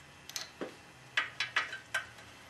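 Light metal clicks and clinks as a bolt and link are slipped into a BMW F650's rear suspension linkage: a couple early on, then a quicker run of about four in the second half.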